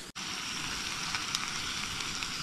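Bacon sizzling in a frying pan: a steady crackling hiss that starts just after a brief break at the very start.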